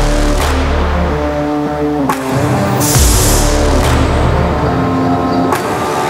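Background music with a strong, steady bass and sustained notes.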